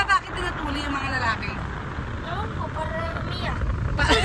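Steady low rumble of a car heard from inside the cabin, under soft, quiet talking.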